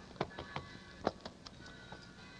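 A quiet pause in an old radio drama: faint sustained tones of a music underscore, with a sharp click near the start, another about a second in, and a few softer ticks.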